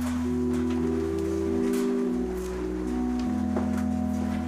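Church organ playing slow, sustained chords that change every second or so over a low held pedal note, with faint shuffling from the congregation.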